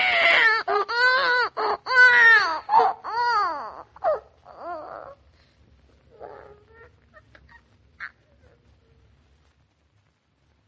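Newborn baby crying in a run of short wailing cries, each rising then falling in pitch. About five seconds in, the cries fade to small whimpers that die away near the end.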